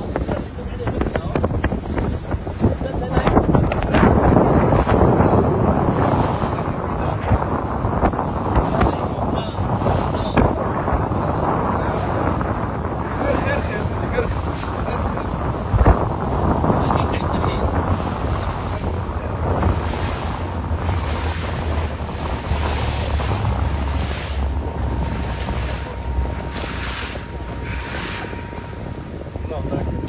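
Boat under way at sea: a steady engine rumble and rushing water, with wind buffeting the microphone in gusts.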